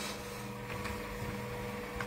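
Steady machine hum with a constant low tone, a workshop machine running, with faint handling of a rubber sheet.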